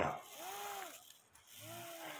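Two faint hums from a person's voice, each rising and then falling in pitch.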